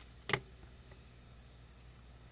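Small metal scissors giving a single sharp click about a third of a second in, over a faint steady hum.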